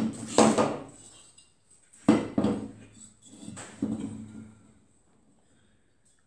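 Cast iron BSA Bantam cylinder barrels clunking against each other and the workbench as they are picked up and stacked: a handful of sharp knocks with a short metallic ring, the loudest at the start and about two seconds in.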